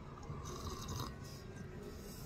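Quiet sips of hot coffee slurped from a mug, in a few short bursts, mostly in the first second.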